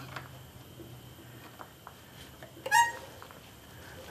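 A screwdriver working at a valve in a Briggs & Stratton engine's valve chamber, making a few faint metal clicks over a low steady hum, with one short, sharp squeak near three seconds in.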